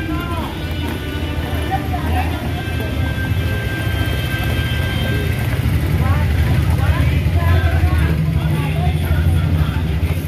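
Children's voices and a song playing together over a heavy low rumble, which grows louder in the second half.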